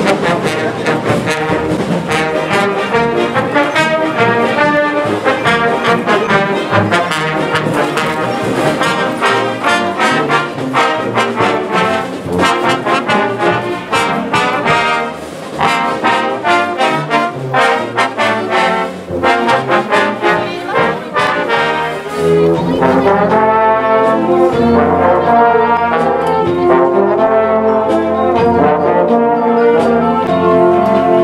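High school marching band playing as it marches: trumpets, trombones, saxophones, horns and sousaphones over a beat of sharp percussive strokes. About two-thirds of the way through, the music turns to louder, held brass chords.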